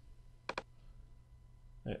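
Computer mouse clicked twice in quick succession, a double-click, about half a second in, over a faint steady low hum.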